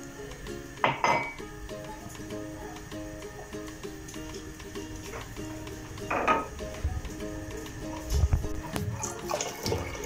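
Soft background music throughout, with kitchen sounds over it: a tin can of milk clinking against the rim of a stainless steel pot as it is poured in, once about a second in and again about six seconds in, and a few dull knocks later on.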